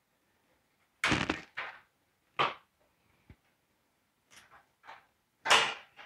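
About six short knocks and rustles spread over a few seconds: hands handling plastic and metal parts inside a desktop PC case. The loudest come about a second in and near the end.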